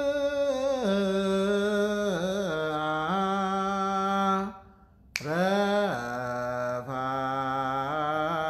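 A man chanting solo in Ethiopian Orthodox style, holding long notes with wavering ornaments between them. He breaks off for a breath about halfway through and starts again suddenly.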